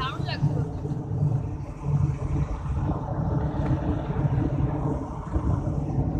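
A moving car's engine and road noise heard from inside the cabin: a steady low rumble.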